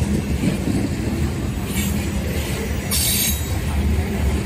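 Covered hopper cars of a freight grain train rolling past close by: a steady rumble of wheels on rail, with two brief high hissing bursts about two and three seconds in.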